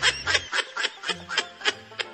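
Laughter in a quick run of short repeated bursts, over background music with a low bass line.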